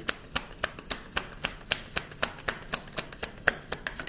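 A deck of tarot cards being shuffled by hand, the cards slapping together in a steady rhythm of about four to five sharp clicks a second.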